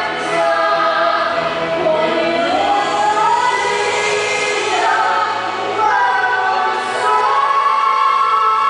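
A man and a woman singing a slow ballad duet into microphones, amplified live, in long held notes that slide smoothly from one pitch to the next.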